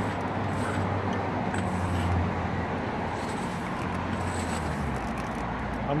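Steady rumble of road traffic in the background, with a low hum that drops away about five seconds in.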